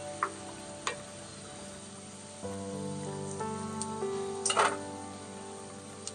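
Background music of held notes over the faint sizzle of kachoris deep-frying in hot oil. A few short metal clinks come from the slotted spoon against the pan and the steel colander, the loudest a little past halfway.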